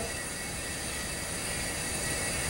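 Steady room tone: an even hum and hiss with no distinct events.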